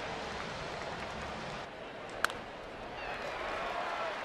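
Ballpark crowd noise, steady and even, with a single brief sharp sound a little past halfway through.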